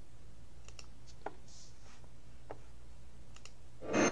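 A few faint, scattered clicks of a computer keyboard and mouse over a steady low hum, with one louder knock right at the end.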